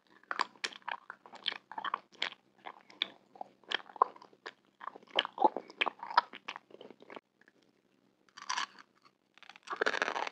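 Close-miked mouth chewing a red candy: a quick run of sharp, crisp crunches that stops about seven seconds in, with one short burst during the pause, then louder crunching again near the end.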